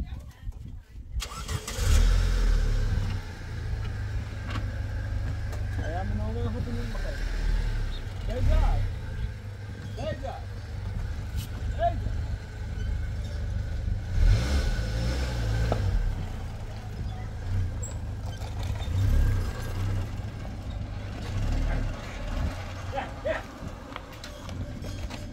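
A car engine running as a steady low rumble that begins abruptly about a second in, with indistinct voices over it.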